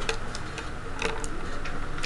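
A few faint ticks against steady low room noise.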